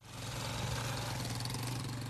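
An engine running steadily, a low even hum with a hiss above it, fading in quickly at the start.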